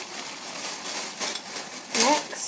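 Rustling and handling of shopping purchases and their packaging, with a few light clicks.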